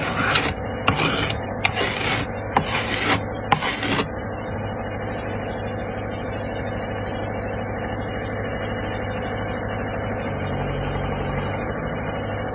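A strike-off plate being drawn back and forth across fresh concrete and the rim of a pressure air meter bowl, about eight scraping strokes over the first four seconds, levelling the sample flush before the air-content test. After that a steady engine hum remains.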